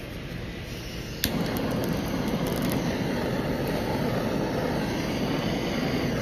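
Handheld butane kitchen torch lit with a click about a second in, then burning steadily as it flame-sears a piece of nigiri.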